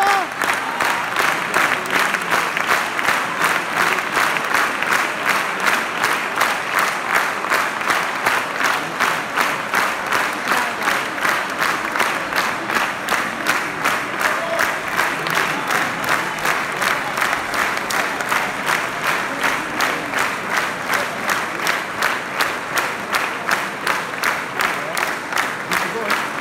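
A concert-hall audience clapping in unison, a steady rhythmic applause at about three claps a second, with voices in the crowd.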